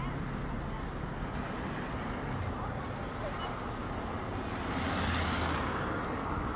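Road traffic noise, with a vehicle passing that grows louder about four and a half seconds in. Insects trill in a high, rapid pulse in the background.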